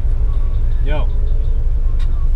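Honda B20B four-cylinder engine with an aftermarket Vibrant muffler idling, a steady low rumble heard from inside the cabin. A short voice-like call sounds about a second in.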